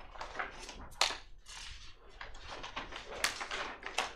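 Paper rustling as pages are handled and turned close to a table microphone, with a sharp crackle about a second in and another just after three seconds.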